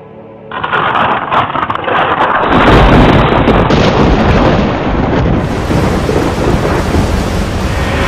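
Thunderstorm sound effect: a sudden crackling burst about half a second in, swelling into a deep rolling rumble over a steady rain-like hiss, with a final surge at the very end.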